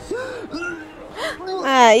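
Short vocal sounds, then near the end a woman's loud, drawn-out "eww" of disgust, rising and then falling in pitch.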